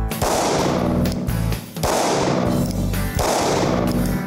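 Three shots from a Caracal Enhanced F 9mm striker-fired pistol, about a second and a half apart, each echoing in the indoor range, over background music.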